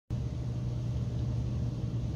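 A steady low hum with a faint even hiss of background noise.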